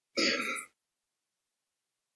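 One short non-speech vocal sound from a man, about half a second long, just after the start.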